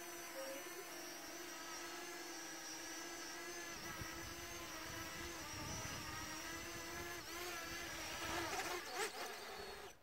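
Parrot Anafi quadcopter's propellers and motors whining steadily as it hovers low and descends to land, several pitched tones held together; the sound wavers near the end and cuts off as the drone settles on its landing pad and the motors stop.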